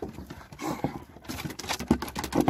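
Pugs scampering on a wooden deck, their claws tapping the boards in an irregular patter.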